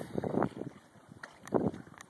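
Wind buffeting a phone's microphone in short, irregular gusts.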